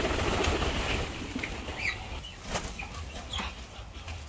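Muscovy duck beating its wings, loudest in the first second, followed by a few short high chirps and clicks.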